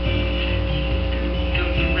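Background music with changing bass notes over a steady electrical hum.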